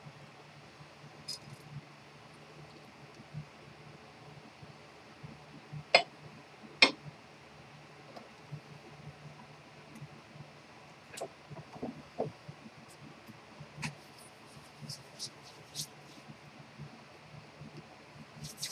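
Quiet room tone: a steady low hum with scattered sharp clicks, the two loudest about six and seven seconds in.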